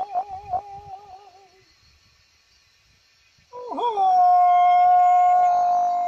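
An elderly man's Ao-Naga yodel cry: a warbling call that trails off in the first second and a half, a short pause, then a new call that swoops down and back up and settles into one long, steady, high held note.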